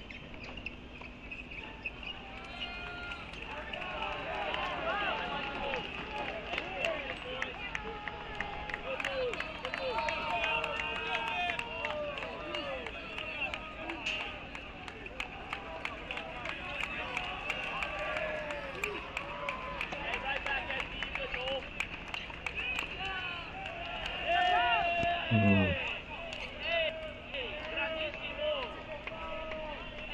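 Open-air tennis court sound from a doubles match: distant voices of players and onlookers calling out, with faint clicks of ball strikes. A louder call with a falling pitch comes a few seconds before the end.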